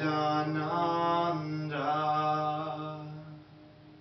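A male voice chants a Sanskrit mantra line in long, held notes, shifting pitch a couple of times. About three seconds in it dies away into a near-quiet pause.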